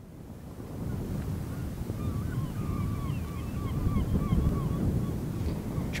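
Wind buffeting the microphone with a steady low rumble, fading in at the start. From about two seconds in, a string of faint, wavering calls of distant birds runs over it for a few seconds.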